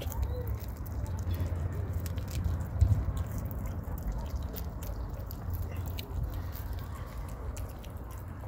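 Kittens eating dry kibble and wet cat food, with many small, irregular crunching and smacking clicks.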